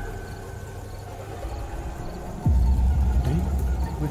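Film soundtrack: a low background drone, then a sudden loud deep rumble that comes in a little past halfway and holds.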